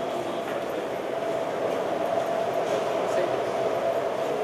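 Steady hum and background noise.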